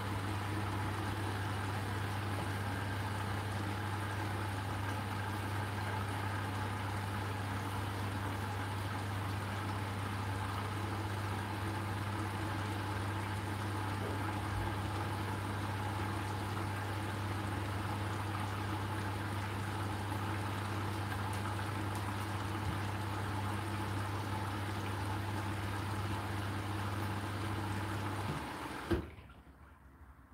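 Hotpoint NSWR843C washing machine filling with water: a steady electrical hum from the inlet valve under the rush of water into the drum. It stops near the end with a click as the valve shuts.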